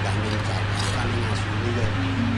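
A wayang kulit dalang's voice through a microphone and PA, over a loud, steady low electrical hum, with a few sharp clicks.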